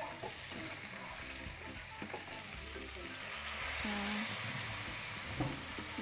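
Chopped roast pork (leftover lechon) frying in a pan on a gas stove with a steady sizzle, while a wooden spatula stirs it with light scraping and tapping on the pan.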